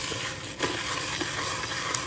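Loose silver rhinestones stirred with a small scoop in a white plastic tray, making a steady rustle of many small stones shifting against each other.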